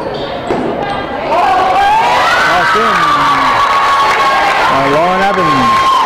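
Basketball game sounds in a gym: a ball bouncing on the hardwood and spectators calling out. The sound grows fuller after about a second. From about two seconds in, one long high held call or tone sounds over it.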